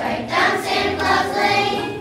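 Children's choir singing together in sustained phrases.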